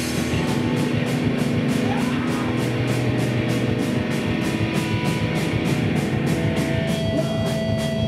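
Live rock band playing loudly: electric guitars over a drum kit, the cymbals keeping a steady beat of about four strokes a second. A held high ringing note comes in about seven seconds in.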